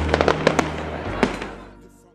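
Fireworks going off: a quick run of sharp cracks in the first half-second or so and one more a little after a second in, over background music. The whole sound fades out near the end.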